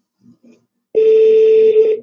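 Telephone ringback tone on an outgoing call: a single steady beep, about a second long, starting about a second in, while the line rings before it is answered.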